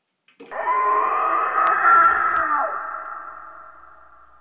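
An eerie horror-film sound effect: a loud layered tone that starts suddenly about half a second in, bends in pitch around the middle, then fades slowly with a long echo.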